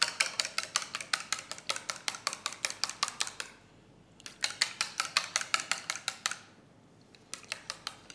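A metal utensil beating a seasoned raw egg in a small stainless steel bowl: rapid, even clinking against the bowl, about seven strokes a second. The beating stops about three and a half seconds in, starts again about half a second later, stops again around six seconds, and a few last strokes come near the end.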